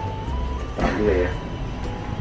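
A steady low rumble of background noise, with a faint thin tone stepping up in pitch over the first second and a brief voice about a second in.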